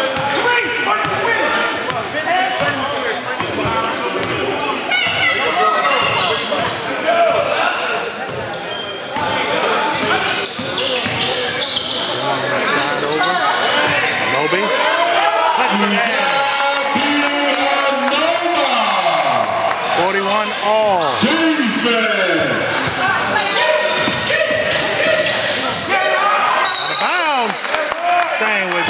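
Basketball being dribbled on a hardwood gym floor amid the voices of players and spectators, echoing in the gym. From about halfway on, short gliding squeaks of sneakers on the court come again and again.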